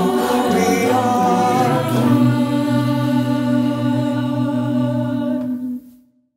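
Mixed a cappella choir of adult and youth voices singing the final chord of a piece: the harmony moves about two seconds in, then one chord is held for almost four seconds and cut off cleanly near the end.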